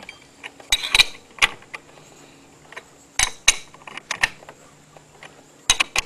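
Hand ratchet and socket working the variator nut on a GY6 150cc engine: a few scattered metallic clicks and clinks as the ratchet is swung. A faint steady low hum lies underneath.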